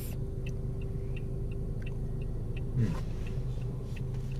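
Steady low hum inside a Toyota car's cabin while it sits stopped in traffic, with a faint, even ticking of about three clicks a second from the turn-signal indicator.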